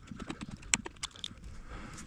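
Irregular metallic clicks and light taps from a screwdriver turning the worm screw of a stainless steel hose-clamp strap, tightening it close to its limit. One sharp click stands out about three quarters of a second in.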